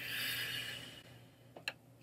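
A man's faint intake of breath between sentences while reading aloud, followed by a brief mouth click shortly before he speaks again.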